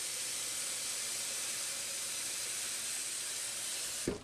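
Tap water running steadily from a kitchen faucet into a plastic pitcher as it fills.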